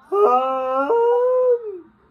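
A man's voice singing a long wordless held note, its pitch stepping twice and then sliding down as it fades out near the end.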